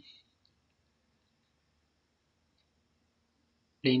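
A few faint single clicks of a computer mouse, in near silence.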